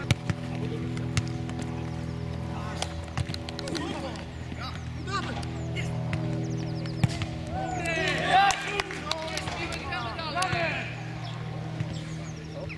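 A football kicked on an artificial-turf pitch: a sharp thud right at the start, with a few more kicks later, over a steady hum. Players shout loudly from about eight to eleven seconds in.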